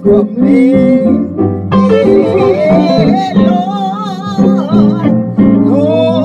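A woman singing a gospel song in long, sliding phrases over instrumental accompaniment.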